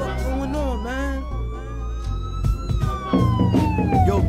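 A police siren sound effect wailing over a hip hop beat: one long rise in pitch that peaks about two-thirds of the way through, then falls. The bass thins out briefly in the middle and comes back in fuller near the end.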